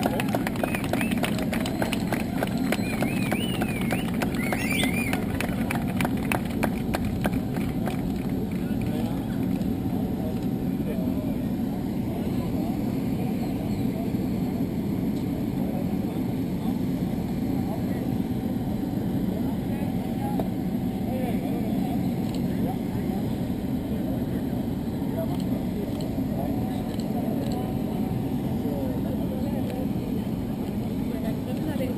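Steady low mechanical drone of an airport apron beside a parked jet, with a crowd talking. A dense run of clicks fills roughly the first eight seconds.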